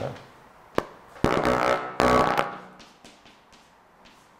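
Chalk writing on a blackboard: a sharp tap as the chalk meets the board, then two scratchy strokes of about half a second each.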